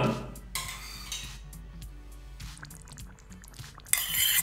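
A metal spoon scraping and clinking against a bowl as yogurt is spooned into the curry pan, mostly about half a second to a second in, over quiet background music.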